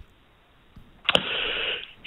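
A telephone-line pause: a click about a second in, then just under a second of hiss, the caller drawing breath before he answers.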